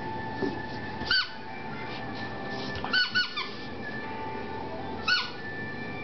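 Rubber squeaky dog toy squeaking: one short high squeak about a second in, three quick squeaks around three seconds, and one more near five seconds.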